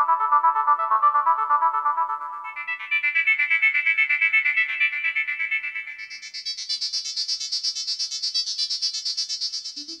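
Doepfer A-100 analog modular synthesizer playing a rapid run of short, bleeping notes that jumps up in pitch twice, ending very high.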